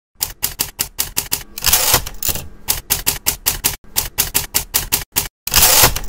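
Typewriter sound effect for a title: rapid key strikes, about six a second, with two longer rasping stretches, one near two seconds in and one near the end.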